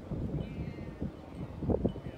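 Wind buffeting a handheld phone microphone outdoors, a low rumble with irregular low thumps, the strongest near the end.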